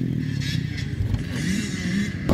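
Bored-out Suzuki RM motocross engine on a sidecar outfit, running steadily at low revs just after being started.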